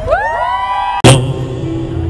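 Live synthesizer music: an electronic sweep of several tones rising in pitch and settling over the first second. A sudden loud hit about a second in gives way to held synth tones over a low bass as a song starts.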